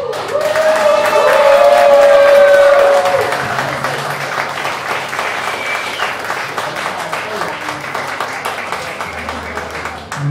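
Small club audience applauding, with voices cheering over the clapping for the first three seconds, loudest then, followed by steady, somewhat quieter clapping.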